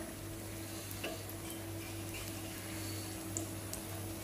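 A batter-coated chapati piece shallow-frying in oil on a flat tawa: a steady sizzle, with a low steady hum underneath and a few faint light clicks.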